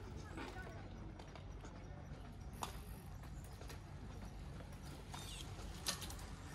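Outdoor street ambience recorded on the move: a steady low rumble with faint voices of passers-by, and a few sharp clicks, the loudest just before the end.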